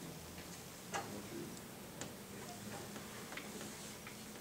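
Sparse, irregular light clicks and ticks over a faint low steady hum. The sharpest click comes about a second in, with another a second later.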